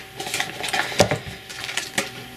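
Handling of a pen's presentation box and its contents: a string of small clicks, taps and rustles as an item is lifted out, the sharpest knock about a second in.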